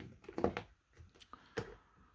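Faint taps and light knocks of a wristwatch being set down on a hard plastic gear case, followed by a few small handling clicks.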